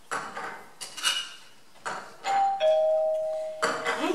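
Two-tone doorbell chime: a higher note followed by a lower note held for about a second, starting about two seconds in. Before it, a few light knocks of things being set down on a table.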